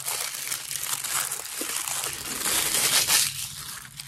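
Thin paper wrapping crinkling and rustling as it is unfolded and crumpled by hand, dying down about three seconds in.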